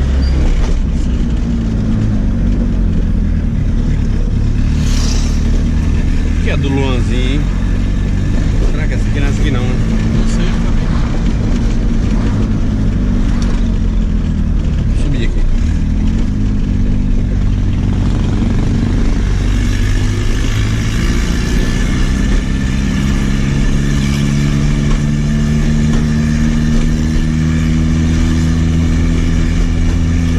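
Turbocharged Volkswagen Gol's engine heard from inside the cabin while driving, a steady drone whose pitch falls and rises a few times as the car slows and picks up speed.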